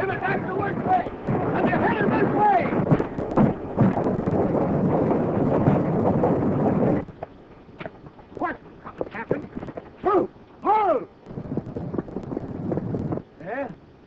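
Old film soundtrack of a fight: a loud, dense din of many men yelling over heavy noise for about seven seconds. It cuts off suddenly to a quieter track with a few short, loud calls.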